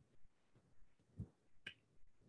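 Near silence, broken by a faint low thump about a second in and a short, sharp click just after it.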